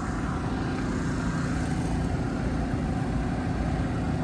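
Steady low rumble of outdoor background noise, unchanging, with no distinct event standing out.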